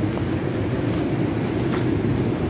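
Steady low rumble of ocean surf resounding inside a rocky sea cave, with a couple of faint clicks.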